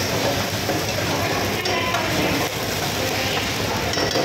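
Chopped tomatoes frying in hot oil in a pan over a high gas flame, sizzling steadily while stirred with a long metal spoon.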